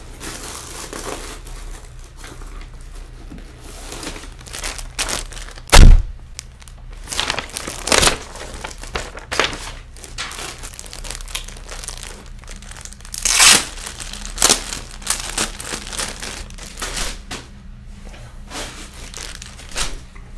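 Rustling, crinkling and knocking of a bag and clothing being handled close to the microphone, with one heavy thump about six seconds in and a longer rustle a little past halfway.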